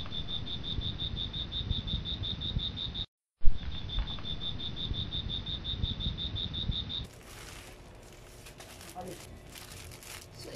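Cricket chirping sound effect: a steady high chirp about five or six times a second over a hiss, broken by a short cut about three seconds in, then starting again. It stops about seven seconds in, leaving faint crinkling of a plastic mailer bag being handled.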